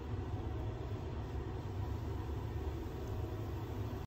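A bath bomb fizzing in bath water: a faint, even hiss over a steady low rumble, with no distinct splash.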